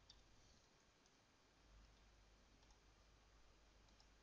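Near silence, broken by a few faint computer-mouse clicks.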